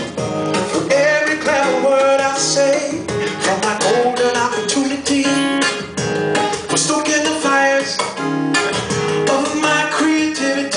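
Solo acoustic guitar played live, strummed chords and picked notes driven by sharp percussive strikes on the strings in a steady rhythm: the instrumental intro of the song.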